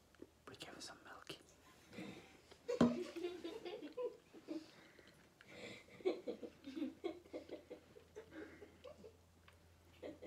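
Quiet whispered and murmured speech, with a sharp click about three seconds in.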